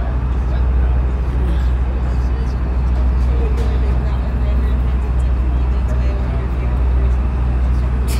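A tour boat's engine idling at the dock: a steady low hum that holds an even pitch throughout.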